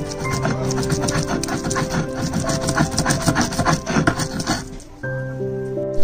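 Stone roller of a sil-batta grinding wet coriander paste on the flat stone slab: a rapid run of rough scraping strokes that stops about five seconds in. Background music with sustained notes plays throughout.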